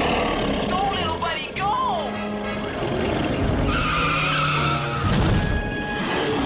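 Cartoon chase score with a small vehicle's engine and tyre-squeal effects. Sliding squeals come between about one and two seconds in.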